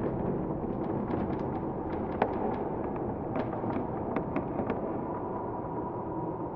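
Ambience soundscape: a steady low rumble with irregular sharp crackles and pops scattered through it, several a second, one louder pop about two seconds in.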